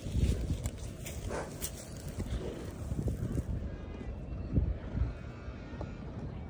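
A horse close by, moving about with a few irregular hoof thuds, the clearest about two-thirds of the way through, over a low steady rumble.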